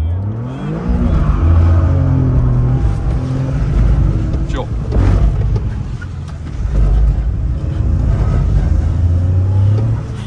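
Toyota GR Corolla's turbocharged 1.6-litre three-cylinder engine revving hard under full acceleration, heard from inside the cabin. The pitch climbs steeply in the first second, holds, drops back around the middle and climbs again in the last few seconds.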